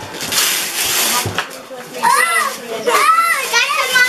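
Gift wrapping paper tearing in a rough rush for about a second and a half, followed by children's excited high voices.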